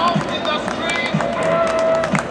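Outdoor crowd chatter of players and spectators on a soccer field, with many overlapping voices and scattered sharp claps. Music with a steady beat of about one a second plays faintly underneath.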